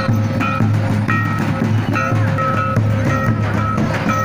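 Santal festival drum music: tamak' kettle drums and tumdak' barrel drums beating a steady, repeating dance rhythm. A high melody of short held notes runs over the beat.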